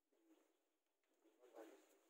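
Near silence, broken about one and a half seconds in by a brief, faint pitched call or voice.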